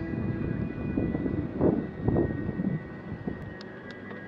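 A small motorcycle's engine running at low speed, with rumbling wind noise on the microphone that swells twice in the middle.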